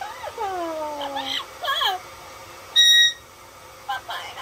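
Yellow-headed Amazon parrot calling: a long falling call, then a few short chattering calls, then a brief loud, shrill whistle on one steady pitch about three seconds in.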